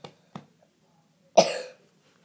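A young girl coughing: two short coughs near the start, then one loud cough about a second and a half in.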